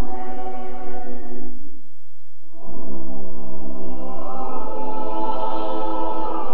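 Church choir singing long held chords, with a short break about two seconds in before the next chord begins.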